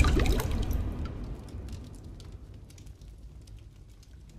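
Sound effect for an animated logo title: a sharp impact hit at the start, then a fading tail of low rumble and glittering high ticks that dies away over about three seconds.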